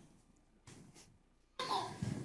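A mostly quiet room with a few faint brief rustles, then a short cough near the end.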